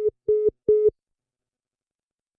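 Phone call-dropped tone: three short, evenly spaced beeps at one pitch in the first second, the sign that the call has been disconnected.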